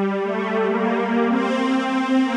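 Instrumental electronic music on a synthesizer-like keyboard: sustained chords whose notes shift about a quarter second in and again a little past the middle.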